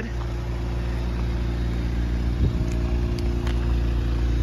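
Car engine idling steadily, a constant low hum, with a few faint clicks in the second half.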